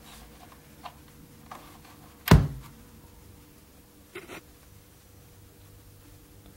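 Novation XioSynth 49 keyboard being handled and switched on: one loud thunk a little over two seconds in, with a few lighter clicks and knocks around it, over a faint steady hum.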